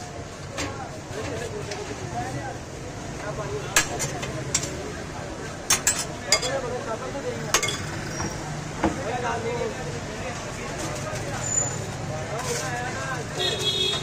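Scattered sharp clinks of a metal spoon against glass bowls as sauce and salad are spooned onto a shawarma, over background voices and a steady low hum.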